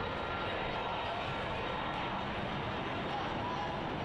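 Steady stadium ambience during live play: an even background wash of open-air crowd and field noise with faint, distant voices.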